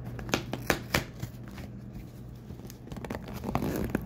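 Cardboard shipping box being handled and opened by hand: a run of sharp taps, clicks and scrapes, with a stretch of crinkly rustling of packaging about three seconds in.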